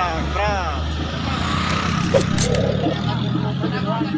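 A motor scooter's engine running close by as it rides through a crowd, a steady low hum under street noise, with men's voices calling out in the first second.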